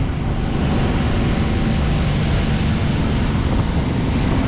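Steady rushing hiss of a fire hose nozzle spraying a water stream onto burnt ground, over the low rumble of the fire truck's engine and pump running, with wind buffeting the microphone.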